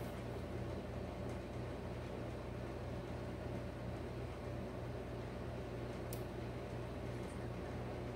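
Steady low room hum with an even hiss underneath, and one faint click about six seconds in.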